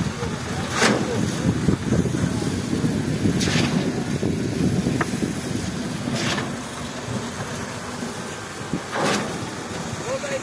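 Truck-mounted concrete pump and concrete mixer truck running during a foundation pour: a heavy, uneven engine rumble with a short hiss recurring about every three seconds.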